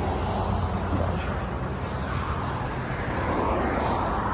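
Steady motor-vehicle traffic rumble from the street, a little louder near the end.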